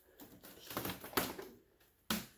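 A handful of light crackles and sharp clicks as the loosened face skin of a hollow-core door is lifted off its glued cardboard honeycomb core.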